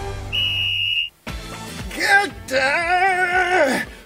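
A short, steady high whistle blast, like a starting signal. After a brief break comes a long, wavering, strained vocal cry that rises, holds and falls away. Background music runs underneath.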